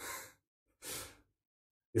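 Two short breathy exhalations from a man, sigh-like puffs of air, the second about a second in, with dead silence around them.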